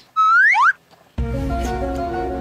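Comic sound effects: a quick rising slide-whistle glide, two upward sweeps in under a second, then, after a brief gap, a sustained music chord with a deep bass.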